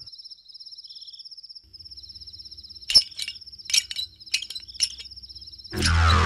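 Cricket chirping as night-time background: a fast, high-pitched pulsing trill. A few sharp knocks come in the middle, and music starts right at the end.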